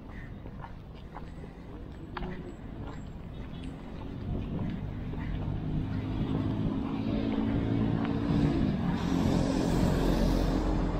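Street traffic, with a motor vehicle's engine growing steadily louder through the second half as it draws near. A few faint clicks come early on.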